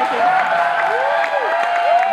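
Live studio audience applauding, with crowd noise, under a tone that arches up and down again and again.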